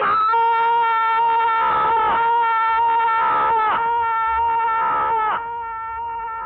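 A man wailing loudly in a series of long, high, sustained cries. Each cry holds one note and then slides down at its end, and they stop a little after five seconds in.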